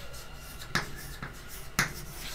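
Chalk writing on a chalkboard: two sharp taps of the chalk against the board, about a second apart, with faint scratching strokes between.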